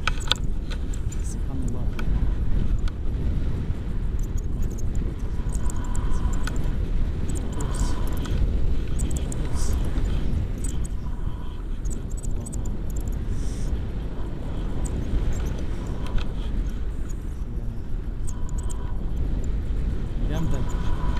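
Wind rushing over the microphone on a paraglider in flight: a steady low rumble with no let-up.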